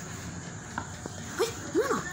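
A toddler's single high-pitched rising-and-falling "ba"-like vocal sound near the end, just after a light tap of a hand on the table. Before that there is only a steady faint background hum.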